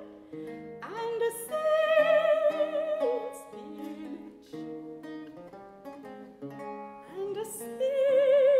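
Soprano singing an Elizabethan lute song with vibrato over a Renaissance lute accompaniment. The voice holds a phrase in the first few seconds, the lute plays on alone through the middle, and the voice comes back in near the end.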